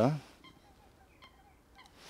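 Near silence after the tail of a man's word, broken by a few faint, short bird chirps.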